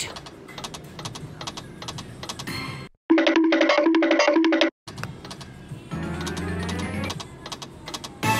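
Ultra Reels video slot machine's game sounds: rapid clicking of spinning and stopping reels, broken in the middle by a loud electronic three-note jingle that starts and cuts off abruptly.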